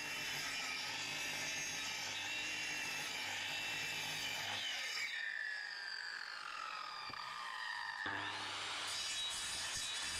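Handheld electric circular saw ripping lengthwise along a rough-sawn board. About halfway the saw comes out of the cut and its blade winds down with a falling whine. Near the end it is started again, whining back up to speed, and cuts on.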